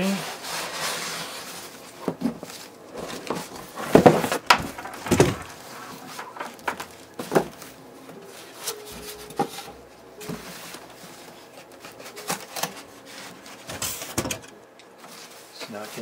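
Packaging being handled: bubble wrap and foam sheeting rustling and styrofoam end caps rubbing, with a string of separate knocks and thumps from the foam blocks and cardboard box, the loudest about four to five seconds in.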